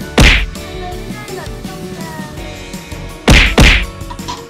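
Three sharp whacks of a kitchen knife striking a durian's hard, spiky husk: one just after the start and two in quick succession near the end, over faint background music.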